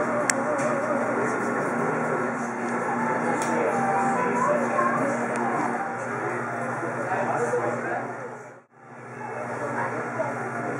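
Chatter of many people talking at once in a crowded restaurant, with music underneath. The sound cuts out briefly near the end, then the chatter resumes.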